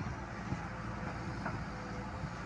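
Diesel engine of a Tata Hitachi EX210LC tracked excavator running steadily under hydraulic load as the boom and bucket work in the soil, with a couple of faint knocks.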